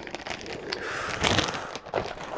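Clear plastic bag rustling and crinkling as it is handled and set down, with a few light knocks.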